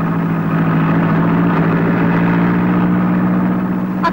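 Car engine running steadily at low revs as the car pulls in, an even hum that holds the same pitch throughout.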